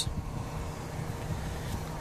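Low, steady rumble of wind on the microphone, with a faint hiss above it.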